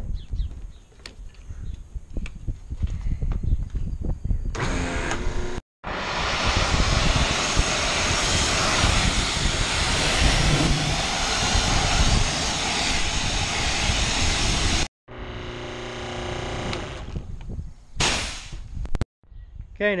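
Pressure washer jet spraying water onto the muddy steel body of a John Deere 675B skid steer: a loud, steady hiss lasting about nine seconds that stops suddenly. A quieter stretch with a low hum follows, and a short burst of spray comes near the end.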